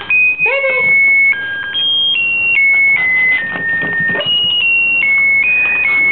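Plush birthday-cake dog toy's sound chip playing an electronic tune, a simple melody of single beeping notes that step from pitch to pitch.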